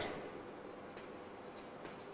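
Faint scratching of chalk writing on a blackboard.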